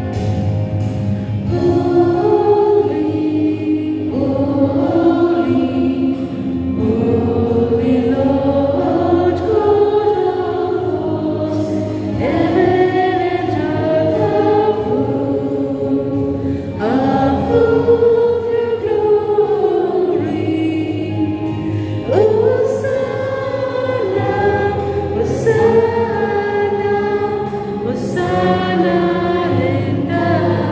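A group of schoolgirls singing a Christian song together into microphones, amplified in a stone church, with long held notes.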